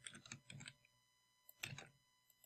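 Faint computer keyboard keystrokes and clicks: a quick run of light taps in the first second, then a louder cluster of clicks near the end.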